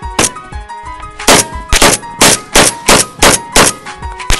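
AK-pattern rifle firing eight shots, one near the start and then seven in quick semi-automatic succession from a little over a second in, about two to three a second, over a background music beat.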